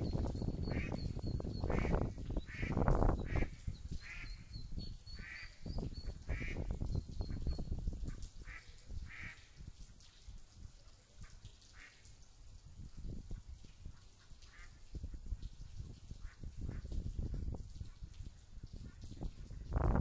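A mother duck quacking over and over, a call every half second or so, the calls growing sparser and fainter after about eight seconds. Thin high peeping of ducklings runs through the first eight seconds.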